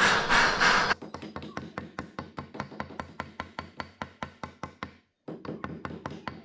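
A gas torch flame hisses loudly for about the first second. Then a small jeweller's hammer taps quickly and evenly, about five light taps a second, on a punch held against a silver ring, with a brief break about five seconds in.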